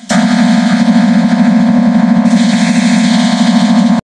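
Loud, heavily distorted electronic buzz with a very rapid stuttering pulse over a steady low drone, a digitally mangled audio effect; it turns a little brighter a bit past halfway.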